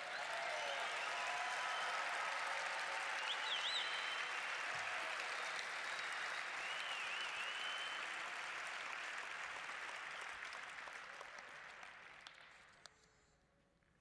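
A large audience applauding, with a couple of short whistles in it; the applause holds steady, then dies away over the last few seconds.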